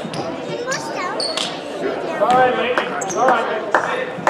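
Basketball being dribbled on a hardwood gym floor, with shouting voices around it and the echo of a large gym.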